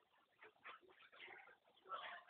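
Near silence with a few faint scratchy strokes of a broom sweeping wet concrete.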